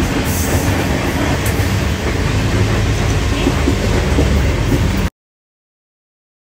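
Steady running noise of a moving vehicle, a low rumble with some rattle. It cuts off abruptly about five seconds in.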